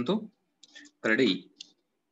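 Speech only: a person lecturing in short phrases with brief pauses.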